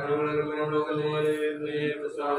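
A priest chanting a prayer from a book, held on a nearly steady sung pitch without a break.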